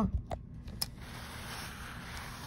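Clothes iron being set on and slid along the folded cotton binding of a quilt: a couple of light clicks, then a steady hiss from about a second in.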